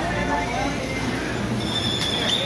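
Indistinct voices of people talking over a steady low hum, with a high, steady beep-like tone starting near the end.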